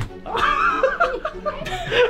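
People laughing, with background music underneath.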